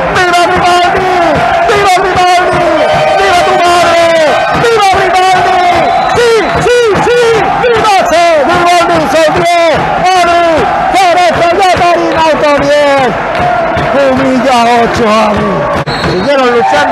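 Loud, excited shouting from a man's voice over a cheering crowd, celebrating a goal just scored.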